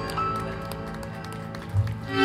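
Live band music: tenor saxophone and plucked double bass, the held notes thinning out and a loud low bass note sounding near the end, with scattered sharp taps.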